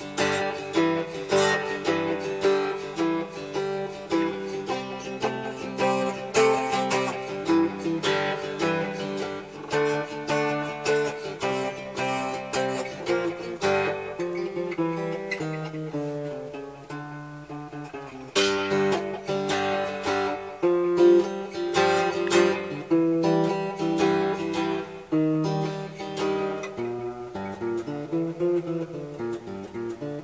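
Cigar box guitar with twin steel sound holes, its strings picked and strummed through a tune. The playing softens in the middle, then comes back stronger about 18 seconds in.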